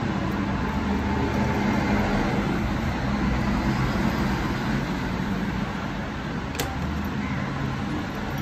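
Steady low background hum and rumble like a nearby engine or traffic, with one sharp click about six and a half seconds in.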